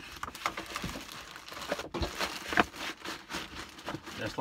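A plastic-bagged bundle of folded jeans being pushed into a paperboard Priority Mail flat rate envelope: irregular crinkling and rustling of plastic against paperboard, with a few sharper scrapes about halfway through.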